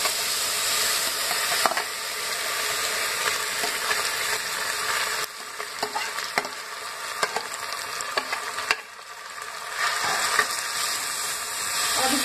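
Moong dal sizzling in hot ghee in a kadhai, just after being poured in. The steady sizzle drops abruptly about five seconds in, leaving a quieter hiss with scattered sharp pops and crackles, then picks up again near the end.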